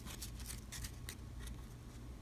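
Faint handling of a cardboard trading card in the fingers: a scatter of light ticks and rustles as the card is turned over.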